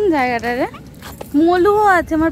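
A young woman's voice in two drawn-out, wordless vocal sounds: the first dips in pitch and rises again, the second near the end is held higher and steadier.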